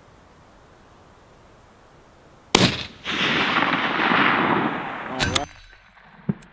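A single rifle shot from a Sig Sauer Cross bolt-action fired prone, a sharp crack about two and a half seconds in, followed by about two seconds of loud, even rushing noise that stops suddenly near the end.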